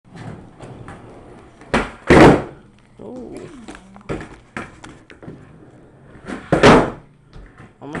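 Skateboard striking a wooden floor: two loud double knocks, one about two seconds in and one near seven seconds, with lighter knocks of the board in between.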